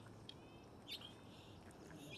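Near silence with a few faint, short bird chirps.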